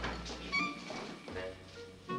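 A boy whimpering and moaning through a mouth stuffed with bandage gauze, the cry thin and cat-like, with music underneath.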